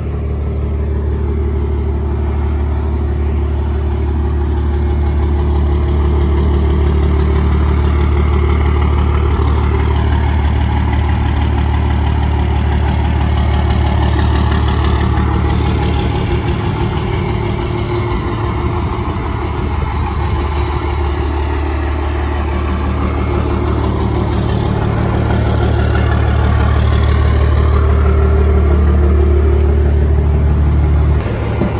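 Second-generation Dodge Ram heavy-duty pickup's engine idling steadily through an MBRP aftermarket exhaust, a deep, even drone that swells a little near the end.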